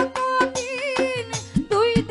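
A woman singing a Bengali baul song, holding a note with vibrato, over a steady beat of drum strokes and sustained keyboard notes.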